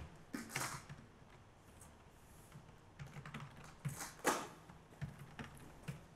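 Computer keyboard keystrokes: a handful of separate, irregularly spaced, quiet key clicks as a passphrase is typed in.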